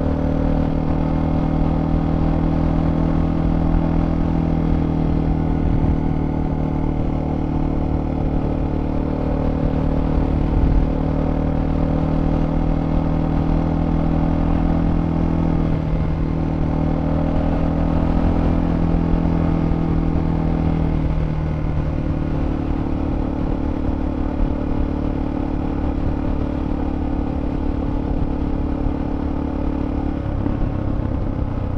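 Motorcycle engine running steadily at cruising speed, heard from the rider's own bike with a low wind rush over the microphone. The engine note wavers briefly about halfway through and settles into a slightly different note a little later.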